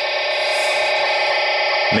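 EDACS trunked-radio control-channel data signal coming from a handheld trunking scanner's speaker: a steady, unchanging data noise.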